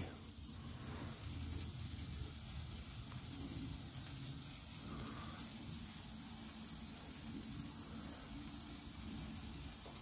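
Four Shogun Electric Red bamboo sparklers burning together with a faint, steady sizzle.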